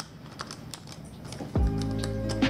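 Pens and a plastic pencil case being handled, a run of small light clicks and rattles. About three-quarters of the way through, background music comes in and carries on.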